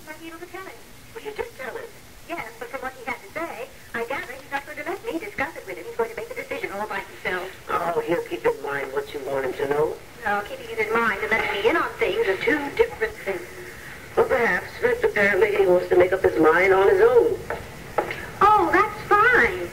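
Indistinct speech throughout, with no words clear enough to make out; the voices sit in a narrow middle range with little bass or treble.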